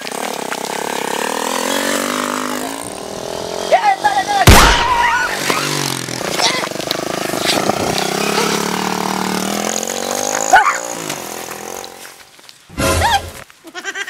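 A motorcycle engine running as the bike rides past, its pitch rising and falling. A loud sharp bang about four and a half seconds in, and another sharp crack shortly before the end.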